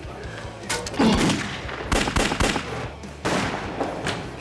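A run of about six sharp bangs at uneven intervals, the loudest about a second in and another near the end.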